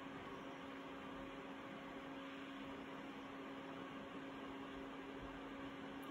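PC cooling fans and AIO water-cooler pump running steadily while the overclocked CPU is under a full Cinebench load: a faint, even hum and hiss with one steady low tone.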